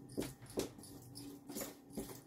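Hand mixing a white powder in a small plastic bucket: a few short, irregular scraping and rustling sounds over a faint steady hum.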